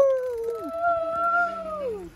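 Several people cheering with long drawn-out overlapping whoops: one voice swells and falls away early, while a higher one is held steady and trails off near the end, over a lower held voice.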